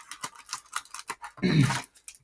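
Cardboard hanger box being opened and its cellophane-wrapped card stack pulled out: a quick run of small clicks, taps and scrapes of card and plastic. A brief murmur from a man's voice comes about three quarters of the way through.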